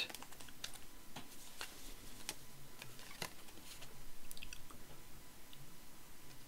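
Hands handling small card and paper pieces and a glue bottle on a cutting mat: quiet, scattered light clicks and taps.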